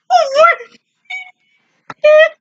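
A woman laughing: a loud, high-pitched, wavering burst of laughter, then a shorter burst about a second in.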